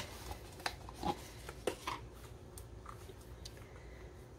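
A handful of soft clicks and taps as silicone muffin liners are handled and set down in a baking pan, mostly in the first half, then quiet handling.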